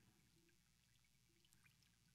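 Faint trickle of water poured over a head and running down into a baptismal font basin, barely above the room tone.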